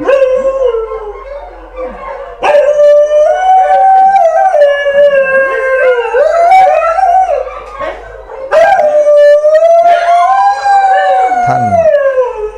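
Dogs howling: long, wavering howls with several voices overlapping, and a short lull about eight seconds in before they take up again.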